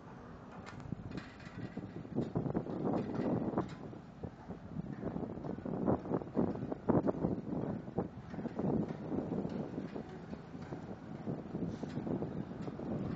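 Wind buffeting the microphone of a phone carried on a moving bicycle: uneven rushing gusts that grow louder about two seconds in.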